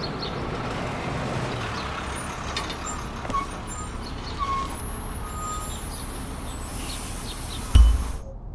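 Outdoor traffic ambience: a steady rumble and hiss of road vehicles, with a few short faint tones in the middle. A sudden loud low thump comes near the end.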